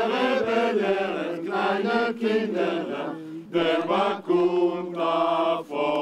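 A choir singing a slow song in Hebrew, holding long notes in phrases separated by short breaths.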